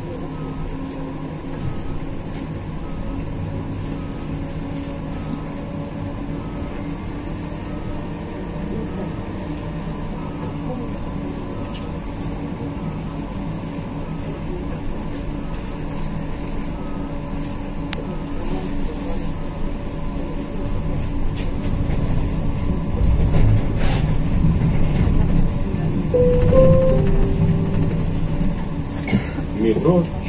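Interior of a 71-414 Pesa Fox low-floor tram in motion: a steady running hum and rumble with a few steady tones in it, growing louder in the second half. A brief high squeal comes near the end.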